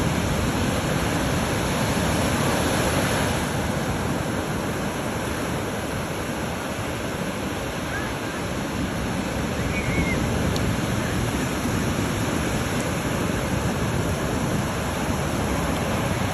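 Ocean surf breaking and washing up the beach: a steady rushing noise that eases a little in the middle and swells again.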